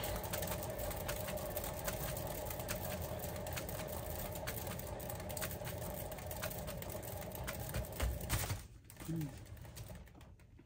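Hand-spun turntable carrying a wet-poured canvas, whirring with a steady hum and fast ticking as it spins, easing off slightly, then stopping with a knock about eight and a half seconds in.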